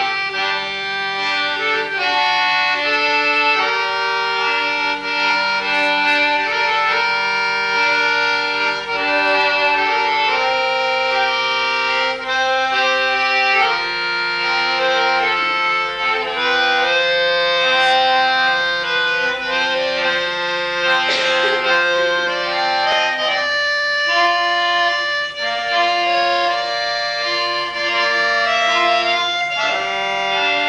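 Solo accordion playing a melody over held bass notes.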